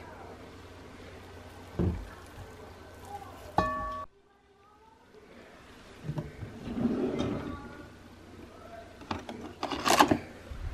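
Kitchen handling sounds: a thump about two seconds in and a short electronic beep, then a sudden drop to near silence. After that, a cabinet drawer slides open and plastic kitchenware is rummaged through, with a clatter of knocks near the end.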